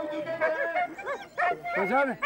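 Wolves let loose on the snow, calling in a quick series of short rising-and-falling yelps, mixed with people shouting.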